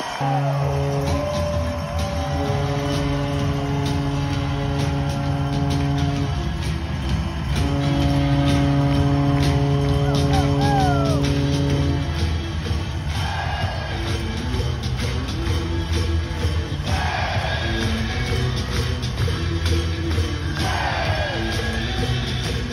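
Arena goal horn sounding two long, steady blasts after a hockey goal, followed by the goal song starting up with a steady beat over a cheering crowd.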